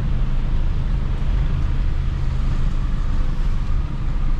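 Toyota Hilux Vigo pickup on the move, its engine and road noise heard from inside the cab as a steady low drone.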